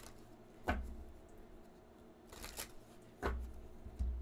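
A deck of oracle cards being shuffled by hand: three short riffling snaps about a second apart, the middle one doubled.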